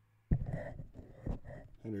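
Handling noise on the FDUCE SL40 dynamic microphone as it is gripped and turned in its yoke mount, picked up by the mic itself in XLR mode. A sharp thump comes about a third of a second in as the hand takes hold, then rubbing and a few small knocks as it rotates.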